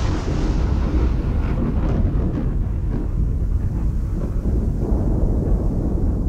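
Thunder sound effect: a long, deep rumble dying away after a crash, its hiss fading over a few seconds.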